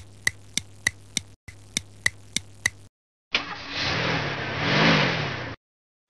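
Clock-ticking sound effect, sharp ticks at about three and a half a second for about three seconds over a low hum. It is followed by a car engine revving up and down twice for about two seconds, which then cuts off.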